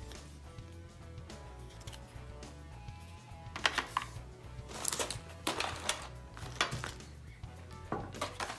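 Soft background music with held notes. From about halfway through, a run of sharp clicks and short rustles as small plastic school supplies, a pencil sharpener and packaged items, are set down and picked through by hand.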